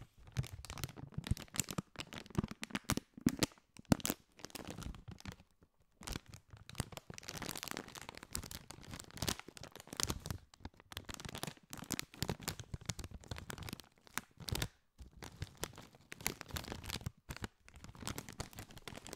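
A Doritos chip bag of metallised plastic film being crinkled and scrunched in the hands close to a microphone. It makes dense, irregular crackling in bursts, with brief pauses about six seconds in and again near fifteen seconds.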